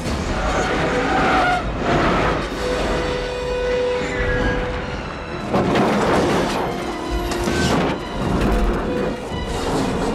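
A bus crash over film music: a prison bus tips over a guard rail and rolls down an embankment, with metal crunching and several heavy impacts.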